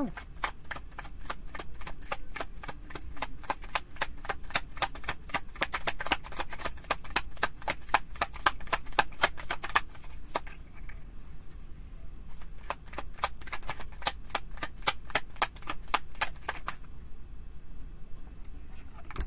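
Tarot deck being shuffled by hand: a quick run of card clicks, about six a second, thinning out briefly around ten seconds in, then running on until near the end.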